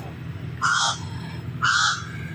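A bird calling twice, two short harsh calls about a second apart.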